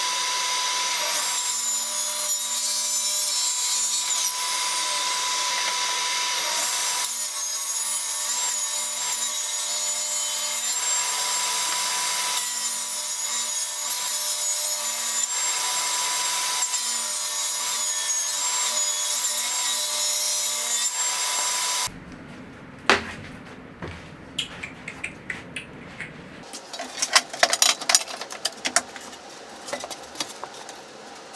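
Benchtop table saw running and cutting veneered door panels: a loud, steady whine with a high-pitched ring, which cuts off suddenly about two-thirds of the way through. Quieter knocks and clatter of wooden pieces being handled follow, busiest near the end.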